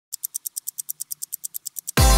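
A rapid, even ticking sound effect, about nine sharp, high-pitched ticks a second, like a fast-running clock. It stops as electronic music starts right at the end.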